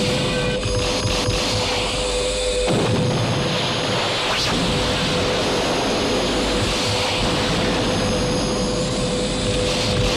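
Dramatic television score over a continuous noisy rumble of gunfire and explosion sound effects; the deep rumble thickens about three seconds in.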